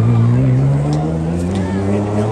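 Turbocharged four-cylinder engine of a 1991 Mitsubishi Galant VR-4 rally car pulling away under power, its note rising slowly in pitch. A few sharp clicks come about a second in.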